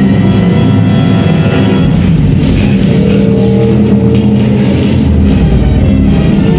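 Loud film score music with a heavy, sustained low end, played over cinema speakers and picked up by a phone camera.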